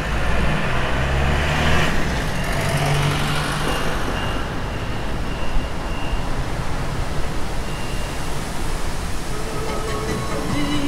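Road vehicle noise: a motor vehicle running along a road with traffic, a steady rumble and tyre noise that is strongest in the first few seconds.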